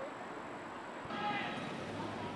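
Outdoor background noise with faint, indistinct voices. The background changes abruptly about a second in, followed by a brief pitched sound like a distant voice.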